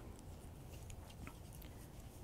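Faint room tone with a few light, sparse ticks from wooden-tipped circular knitting needles being worked through yarn.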